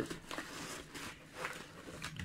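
Crumpled packing paper rustling and crinkling in a cardboard box as hands push it aside to reach a bubble-wrapped package, in several short rustles.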